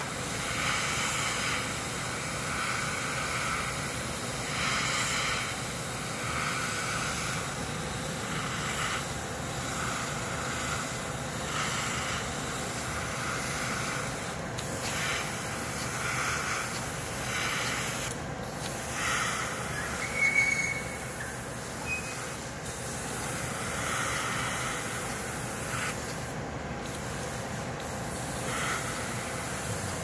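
Airbrush hissing in repeated short bursts, about one every two seconds, as the trigger is worked to mist thinned desert-sand lacquer over a black surfacer base.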